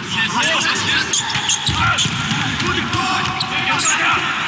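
Volleyball rally on an indoor court: sharp hits of the ball against hands and floor, with short squeaks of sneakers on the court surface, over a busy hall background.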